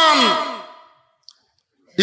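A man's preaching voice draws out the end of a word with falling pitch and fades away about a second in. About a second of silence follows, broken by one faint click.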